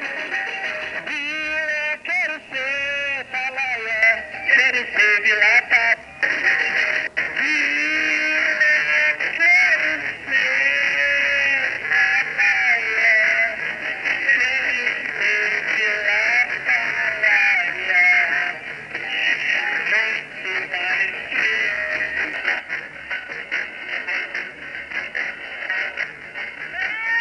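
Live band music with a lead singer, the melody wavering and sustained over a steady accompaniment, in a tinny, narrow-sounding low-fidelity recording.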